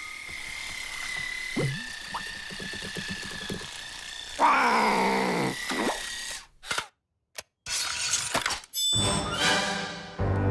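Cartoon soundtrack of music and comic sound effects, with a loud falling glide about four and a half seconds in, a brief total drop-out near seven seconds, and a burst of busier effects near the end.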